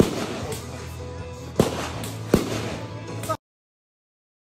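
About four sharp gunshots from a shooting range, irregularly spaced, over steady background music. The sound cuts off abruptly a little after three seconds.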